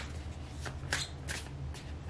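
Tarot deck being shuffled by hand: a few short, crisp card snaps about every half second over a low steady hum.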